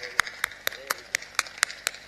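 Steady hand clapping, about four claps a second.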